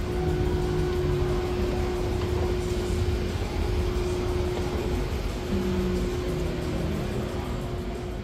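Escalator running: a steady hum over a low mechanical rumble, with music playing faintly.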